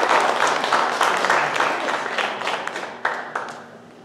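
Applause: many hands clapping, loudest at the start and dying away about three and a half seconds in.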